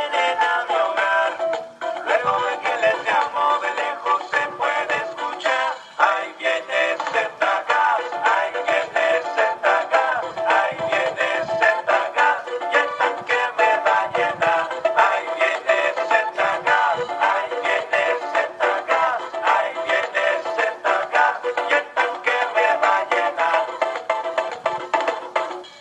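Z Gas delivery truck's advertising jingle, a sung song with backing music, played at steady volume through the loudspeaker on the truck's cab roof.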